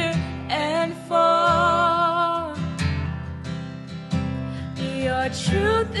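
Acoustic guitar strummed under sung vocals, with one long held note that wavers in vibrato, starting about a second in.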